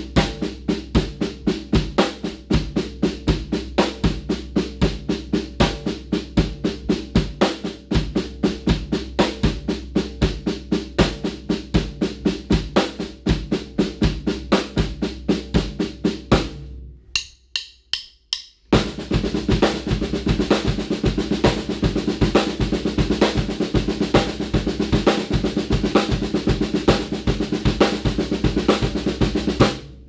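Drum kit playing a seven-stroke sticking grouping as eighth-note triplets on the snare drum over steady quarter notes on the bass drum. It goes at a slow, even tempo first, stops for about two seconds a little past the middle, then starts again faster and denser.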